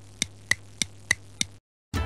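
Clock ticking sound effect: six sharp, evenly spaced ticks, about three a second, over a faint low hum, stopping suddenly shortly before two seconds in.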